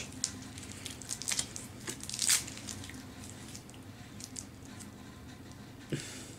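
Plastic wrapper of a Cadbury Fudge chocolate bar crinkling and tearing as it is pulled open by hand: a run of short crackles in the first couple of seconds, the loudest tear about two seconds in, then only faint rustling.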